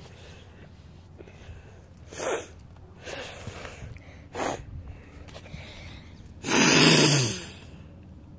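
A person sneezing close to the microphone: a few short sharp breaths, then one loud sneeze near the end with a low falling voice in it.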